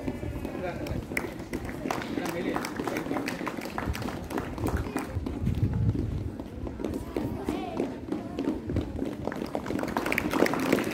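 Footsteps striking a stage floor, a scatter of sharp footfalls, over a low murmur of voices.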